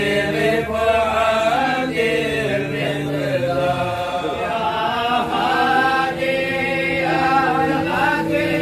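A group of men chanting a devotional Mawlid recitation together, in long held notes that glide from pitch to pitch without a break.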